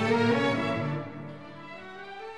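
Orchestral background music with held string notes, dropping to a softer passage about a second in.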